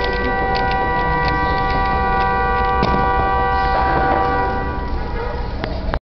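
A 3x3 speedcube being turned rapidly by hand, its layers clicking in quick irregular turns. A steady ringing tone of several pitches held together sounds over the clicks and stops about a second before the end.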